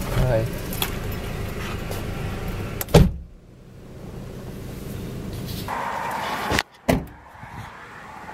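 Car cabin rumble while driving, ended by a loud thump about three seconds in. A quieter hiss follows, then two sharp knocks in quick succession near the end.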